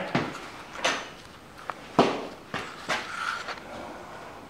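A handful of sharp metal knocks and clunks, the loudest about two seconds in, as the steel track assembly and its parts are shifted and handled on the tractor's axle post.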